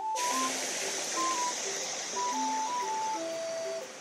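Spring water pouring from a pipe and splashing, a steady rushing hiss that starts suddenly and fades out near the end, under light background music playing a simple chiming melody.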